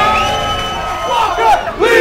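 Rap-battle crowd letting out a long held shout in reaction, steady in pitch and fading slowly over about a second and a half. A man's voice cuts in near the end.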